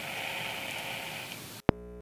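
Open telephone line hissing after the far end has hung up, with a faint steady hum. Near the end a sharp click cuts the hiss off, and a steady buzzy phone tone follows.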